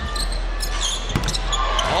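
Basketball bouncing on a hardwood court, with sharp thuds about a second in, short high sneaker squeaks, and steady arena crowd noise under it.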